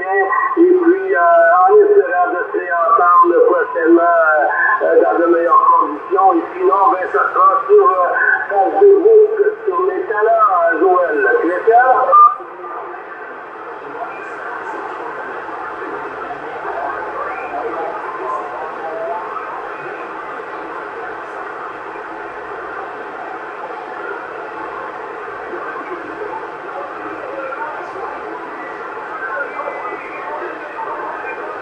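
A distant station's voice received on single-sideband on the 27 MHz CB band, thin and band-limited, for about the first twelve seconds; the transmission then stops suddenly and the receiver's steady band hiss fills the rest.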